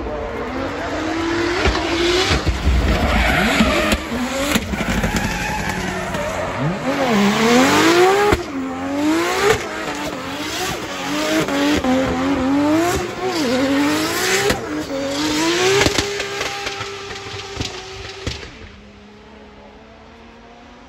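Drift car sliding through tyre-smoking donuts, its engine revving up and down again and again over the screech of spinning tyres. Near the end the sound dies down to a quieter, steady engine note.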